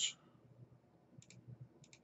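Two pairs of faint computer mouse clicks, the pairs about half a second apart, over quiet room tone.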